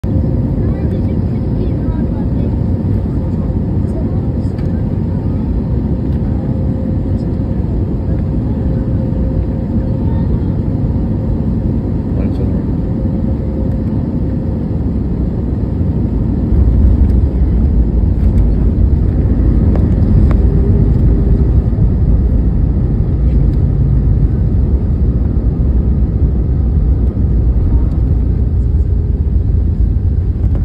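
Cabin noise of an Airbus A320-family jet on final approach: steady engine and airflow noise, then about halfway through the wheels touch down and a louder low rumble of the aircraft rolling on the runway takes over.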